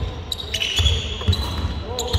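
A basketball bouncing on a hardwood court in a large sports hall, with sneakers squeaking sharply on the floor as players cut.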